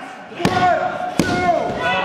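Two slaps on a pro wrestling ring's mat, about three-quarters of a second apart, under shouting voices.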